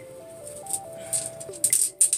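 Background music with a simple stepping melody, and over it a few sharp clicks and rattles in the second half: small polished crystals clinking together as they are tipped out of a cloth pouch.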